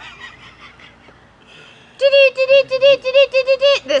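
A high-pitched, cackling laugh: a quick run of about a dozen 'ha's at one pitch, about six a second, starting about halfway through.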